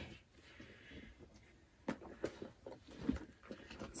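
Faint handling noise of small items being picked up and moved at a table. It is mostly quiet at first, then several soft clicks and taps come in the last two seconds.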